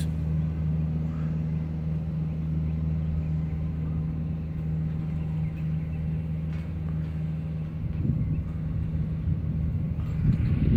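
An engine running steadily with a low, even hum; near the end the hum gives way to a rougher low rumble.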